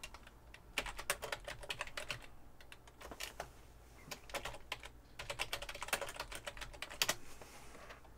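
Typing on a computer keyboard: several quick runs of keystrokes separated by short pauses.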